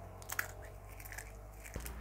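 Crushed eggshell fragments crackling faintly as fingers crumble them over a plant pot, with a few small sharp crunches in the first second and a soft thump near the end.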